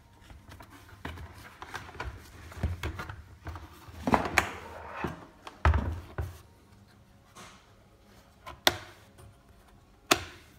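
Handling noise from the plastic housing of a Beurer humidifier being turned over and moved on a wooden tabletop: irregular clicks, scrapes and knocks, with a few sharper knocks in the middle and one near the end.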